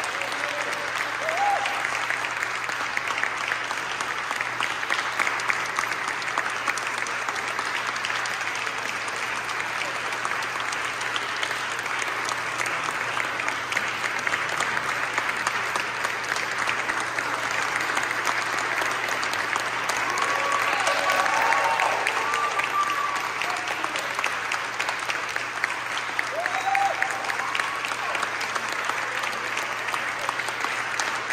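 Audience applauding steadily, swelling slightly about twenty seconds in, with a few voices calling out over the clapping.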